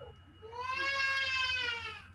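One long, high, drawn-out call, a voice-like wail with a slight rise and fall in pitch, lasting well over a second.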